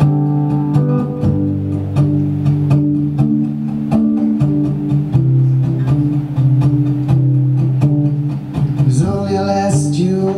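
Solo acoustic guitar playing a picked and strummed intro, its chords ringing and changing every second or so. A man's singing voice comes in near the end.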